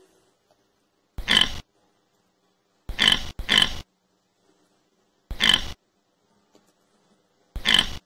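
Pig oinking: five short oinks about two seconds apart, the second and third close together, with silence between them.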